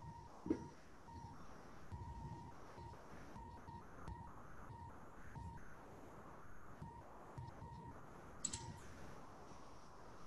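Quiet call audio with a faint electronic beeping tone that comes and goes in short, irregular pieces, and a small click about half a second in.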